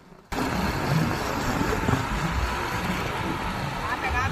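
Steady wind rush and road noise from riding along a street on a two-wheeler, with a low engine rumble underneath; it cuts in suddenly just after the start.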